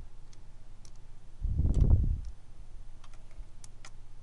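A few scattered clicks of a computer mouse, with one low, muffled thump about a second and a half in, over a faint steady hum.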